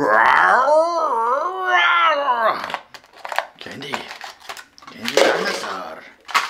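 A person's drawn-out wordless vocal exclamation, wavering up and down in pitch for about two and a half seconds. Then clicks and rustling as plastic toy packaging is handled, with another short vocal sound near the end.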